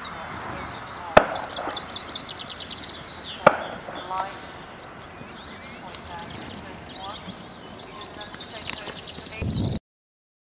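Open-air ambience with small birds trilling, broken by two sharp knocks about a second in and about three and a half seconds in. A brief low rumble comes just before the sound cuts off.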